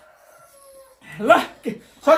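A short voiced cry that slides up and down about a second in, with a brief second yelp just after, from someone reacting to the burning heat of the spicy noodles; before it, a faint held hum.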